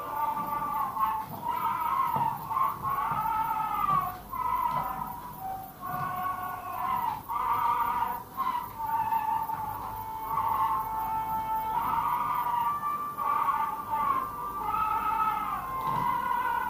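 Old 1930s Chinese film soundtrack music played back: a single thin, high, wavering melody that glides between notes, in phrases broken by short pauses.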